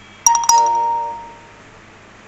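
A two-note chime, like a doorbell: two strikes in quick succession, each ringing out clearly and fading over about a second.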